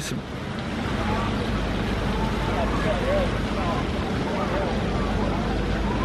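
Steady outdoor background noise, a constant low rumble and hiss, with faint distant voices in it.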